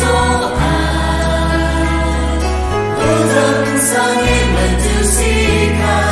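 Kachin Christian praise and worship song: singing over a full instrumental backing with sustained bass notes that change every second or two.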